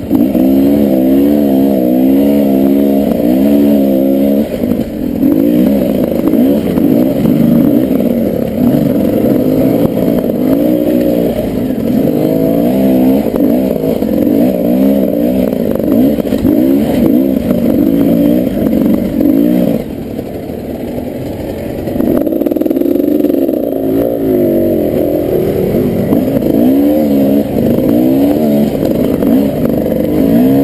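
Off-road dirt bike engine ridden up a rocky trail, its revs rising and falling constantly with the throttle. The throttle eases off briefly about two-thirds of the way through, then the revs pick up again.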